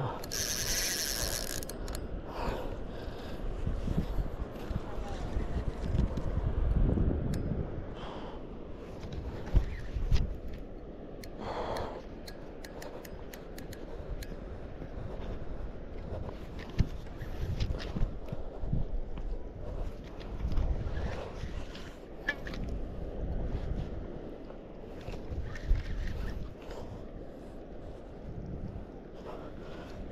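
Low rumbling handling and wind noise on a camera clamped to a spinning reel as the reel is worked against a heavy fish, with scattered clicks and knocks. There is a short hiss at the very start.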